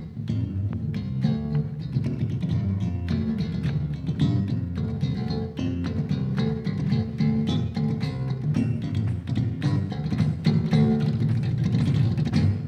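Solo electric bass guitar played in a fast, percussive slap style built on tabla and mridangam finger strokes: a continuous run of rapid notes.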